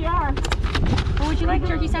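Plastic food cups and paper bags handled over metal serving pans, with a few sharp knocks about half a second in, over a steady low rumble and voices.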